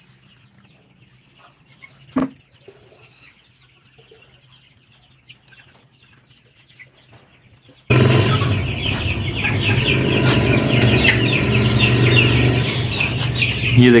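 Quiet at first, with one sharp knock about two seconds in. From about eight seconds a flock of Silkie chickens starts up loudly, many birds clucking and cheeping at once over a steady low hum.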